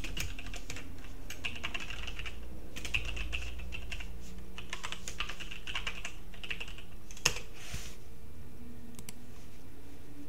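Typing on a computer keyboard: a fast run of key clicks for about seven seconds, then one louder single keystroke, followed by a few scattered key presses.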